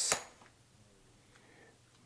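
The tail of a softly spoken 'yes' with a hissed 's', one short click just after, then near silence: room tone.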